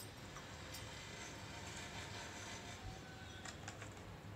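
Faint handling sounds of a hand rubbing masala paste into raw fish pieces on a plate, over quiet room noise, with a few soft clicks about three and a half seconds in.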